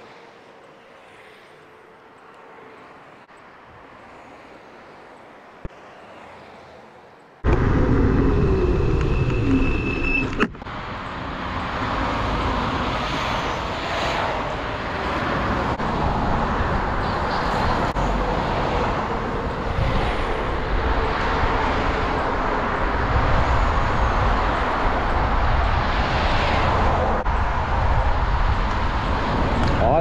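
Faint street traffic, then, suddenly about seven seconds in, loud wind rushing over an action camera's microphone, mixed with road noise from an electric scooter ride under way. There is a single sharp click a few seconds after the wind starts.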